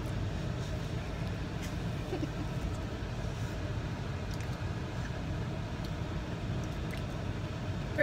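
Steady low rumble of an idling car, heard inside the cabin, with a few faint clicks.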